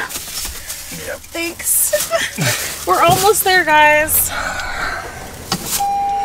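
A person's voice in short, untranscribed exclamations, with a steady single-pitch tone starting near the end.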